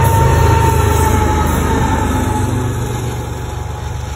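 CN diesel-electric locomotive running in a passing freight train, its deep engine rumble fading as it moves away. A high whine drops slightly in pitch as it goes by.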